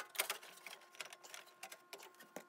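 Faint, irregular clicks and light taps of a 16-bit ISA network card and its metal bracket being fitted into an expansion slot of an open PC case.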